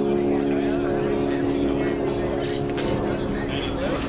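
Electric guitar chord left ringing through an amplifier, several notes held steady and then fading out about halfway through.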